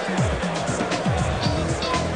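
Background music with a repeating run of falling low notes.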